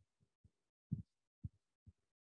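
Near silence broken by five or six faint, short low thumps, the strongest about a second in.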